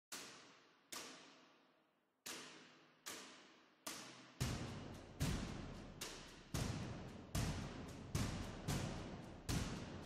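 Quiet percussive hits with ringing tails, a dozen or so at uneven spacing, louder from about halfway through: the sparse opening of a background music track.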